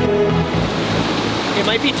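Electronic background music ending about half a second in, giving way to the steady rush of river water pouring over rapids and a small waterfall. A man's voice starts near the end.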